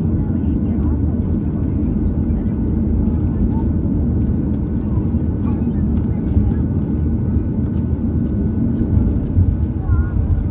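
Steady low rumble inside an airliner cabin over the wing: a Boeing 737's engines running at taxi power while the jet rolls along the taxiway.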